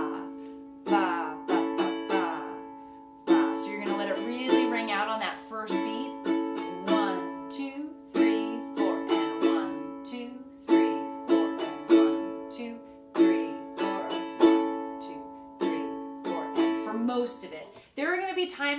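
Ukulele strumming one chord in a slow march strum: a repeating pattern of two slow strums followed by three quicker ones, like war drums, with each strum left to ring out.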